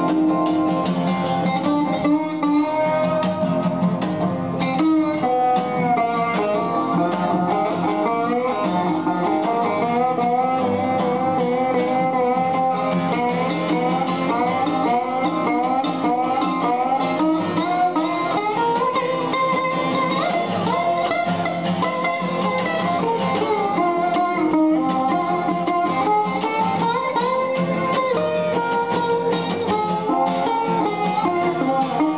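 Metal-bodied resonator guitar picked alongside an acoustic guitar in an instrumental passage of a blues song, with no singing.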